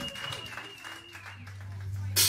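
Scattered clapping from a small club audience in the gap between songs, over a steady amplifier hum and a thin, high feedback whine that fades out about a second and a half in.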